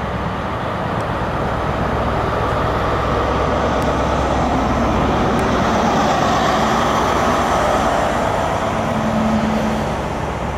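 Class 43 HST diesel power car running past at close range with its coaches, engine note and wheels on the rails mixed. The sound swells to its loudest about five to seven seconds in as the power car goes by, then eases slightly as the coaches follow.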